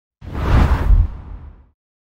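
A whoosh sound effect with a deep rumble. It swells in just after the start, peaks within the first second and fades out by about a second and a half.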